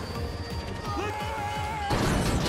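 Film soundtrack from a helicopter-crash action scene: background music over a dense rumbling mix of crash effects, with a held, wavering high note coming in about halfway through.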